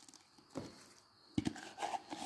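Flexible plastic mixing tub being handled as a sheet of mostly cured, still-gummy epoxy is peeled out of it: a soft crinkle about half a second in and a sharp click about a second and a half in.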